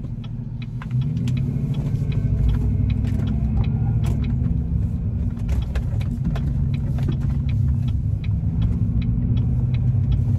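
Vehicle engine and road rumble heard from inside the cabin, growing louder about a second in as the vehicle gets under way, then running steadily with scattered faint clicks.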